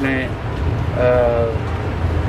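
Steady low rumble of traffic, with a vehicle horn sounding once about a second in, in a short tone that falls slightly in pitch.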